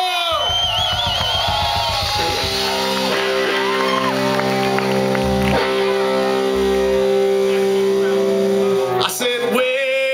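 Live electric rock band kicking off a song: electric guitars and drums, with a long held chord ringing from about two seconds in until near the end, and shouting voices at the start and end.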